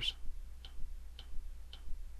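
Faint, evenly spaced ticks, about two a second, three of them, over a low steady hum.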